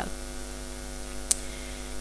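Steady electrical mains hum picked up by the microphone and sound system, with one sharp click a little past halfway.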